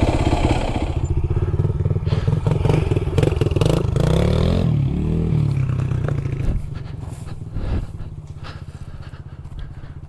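Yamaha WR426F dirt bike's single-cylinder four-stroke engine idling, with a brief rev that rises and falls about four to five seconds in. The engine sound then grows fainter toward the end.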